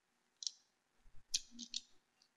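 A few light clicks and taps from a hand handling a cheesecake on its metal pan base: a single click about half a second in, then a quick cluster of them in the second half.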